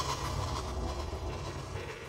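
A steady low rumble with a hiss over it, which starts suddenly just before and eases off slightly toward the end.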